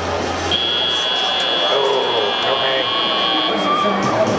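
FRC field's end-of-match buzzer: one steady, high-pitched tone lasting about three seconds, signalling the end of the match, over the crowd noise of the arena.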